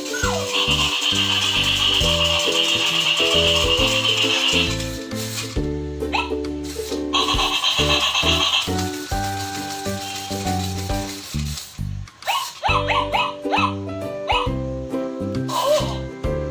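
Music with a rhythmic bass line and sustained melody notes, breaking off briefly about twelve seconds in. Short sliding chirps join it near the end.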